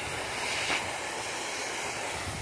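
Steady spraying hiss of a running pop-up lawn sprinkler close by, while its nozzle is turned by hand.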